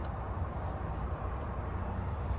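The Ford Maverick's 2.0-litre EcoBoost four-cylinder idling, heard from inside the cab as a steady low hum.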